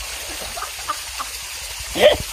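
River water rushing and splashing steadily around swimmers in a rocky pool, with a few faint short calls in the background.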